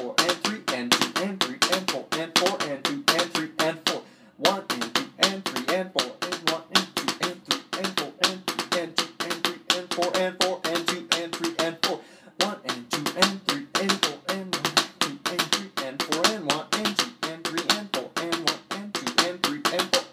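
Wooden drumsticks playing the single drag rudiment on a drum practice pad: a quick, steady stream of taps with grace-note drags in a triplet feel. The playing breaks off briefly twice, about four and twelve seconds in, and stops just before the end.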